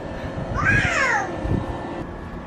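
A toddler's short high-pitched squeal, rising then falling in pitch, about half a second in.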